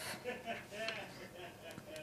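Quiet handling of small plastic molecular-model kit pieces as hydrogen balls are fitted onto connectors, with a faint murmured voice.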